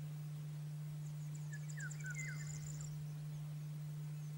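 A Eurasian golden oriole sings a short phrase of sliding notes about a second and a half in, with a fast run of very high, thin notes alongside. A steady low hum runs underneath throughout.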